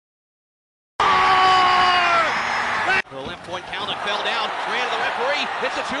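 Arena goal horn sounding loudly over a cheering hockey crowd for about two seconds, celebrating a goal, then cut off abruptly. A voice and crowd noise follow.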